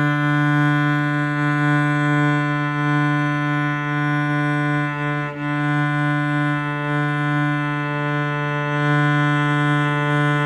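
Cello holding one long, loud, steady bowed note on an open string, with a slight dip in the sound about five seconds in. It is a sustained-note exercise in bow control and tone: the note is kept forte without a break.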